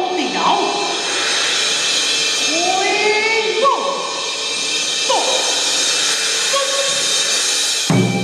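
Live Taiwanese opera accompaniment: a steady wash of ringing cymbals and percussion under a melodic line or voice that swoops up and falls back in pitch several times.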